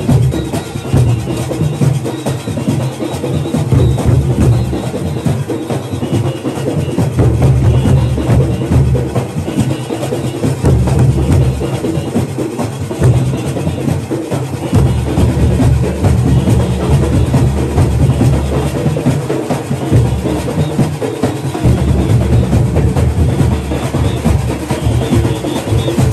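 A Junkanoo band's large goatskin barrel drums pounding in a loud, continuous, driving rhythm, with a strong low-pitched beat, as the drum section plays together on the move.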